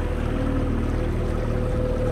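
A john boat's outboard motor running at a steady speed: a low, even drone with a steady higher whine above it.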